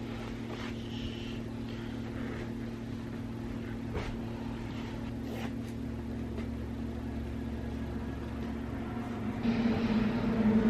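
A steady low mechanical hum with several steady tones, with a few faint clicks. A louder sound comes in near the end.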